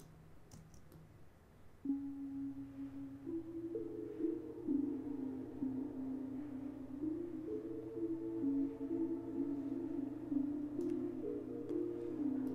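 Electronic music played back through Ableton Live's Shifter pitch/frequency-shifting effect. After near silence, sustained overlapping low tones come in about two seconds in and step from pitch to pitch, as in a slow pad or chord line.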